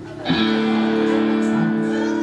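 A live band starts a song about a third of a second in, with a chord on electric guitar that rings and holds steady.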